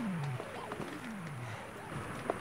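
A mountain bike riding on a dirt trail: steady rolling and rattling noise, with a couple of whining tones that fall in pitch.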